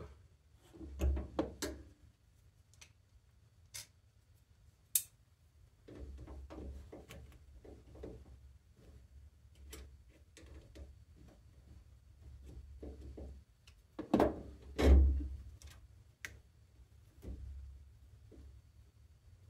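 Handling noise from work on a washing machine's plastic water inlet valves: scattered sharp clicks of wire connectors and hose fittings, and pliers working at a hose connection. Two louder knocks come near the end.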